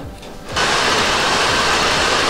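Handheld hair dryer switched on about half a second in and blowing steadily, blow-drying hair rolled on a round brush.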